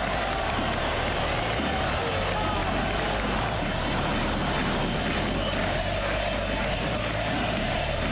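Stadium crowd cheering, mixed with music that has a steady beat of about three a second.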